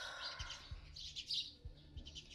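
Small birds chirping: several short, high calls repeating through the background.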